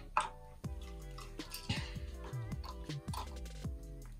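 Background music with held chords over a deep, repeating beat.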